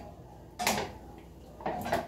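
A single sharp clack of cookware at the stove about two-thirds of a second in, as oil is poured into a stainless steel pan, followed by a fainter knock near the end.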